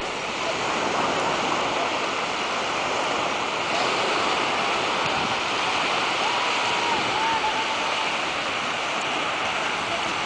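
Small waves washing onto a sandy beach: a steady rushing surf noise.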